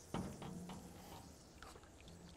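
Faint pour of a large volume of beaten eggs from a big stainless-steel bowl into a wide steel pan already filling with liquid egg. A brief louder sound comes just after the start.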